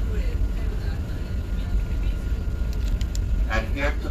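Steady low rumble of a moving tour bus, engine and road noise heard from inside the cabin.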